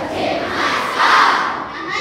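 A group of schoolchildren shouting together in chorus, with two loud surges of many voices at once, the second and loudest about a second in.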